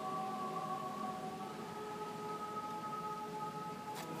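Mixed choir singing a cappella, holding a sustained chord that moves to a new chord about a second and a half in.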